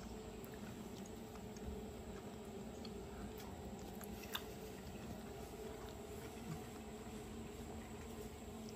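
Faint chewing of a bite of seared ribeye over a low steady hum, with a few small clicks, the sharpest about four seconds in.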